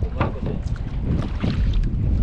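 Steady low wind rumble on the microphone with sea water around a small outrigger boat, a few light handling knocks mixed in.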